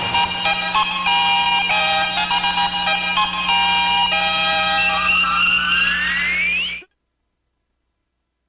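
Radio station jingle: a quick electronic melody of stepped notes that ends in a rising sweep and cuts off suddenly about seven seconds in.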